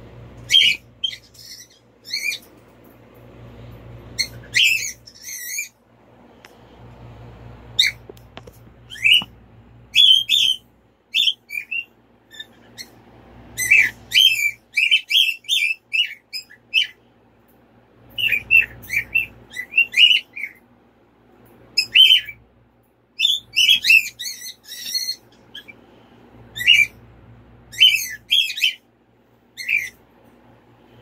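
Bird chirping: many short, high calls, often in quick runs, with a soft low rumble that comes and goes between them.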